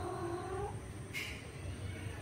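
Domestic cat giving one drawn-out call, about a second long and slightly rising in pitch, during a tom cat's courtship of a female; a brief hissy sound follows just after the middle.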